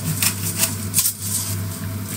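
Disposable black peppercorn grinder being twisted, its grinding head crushing peppercorns in a quick run of dry clicks that thins out after about a second, over a steady low hum.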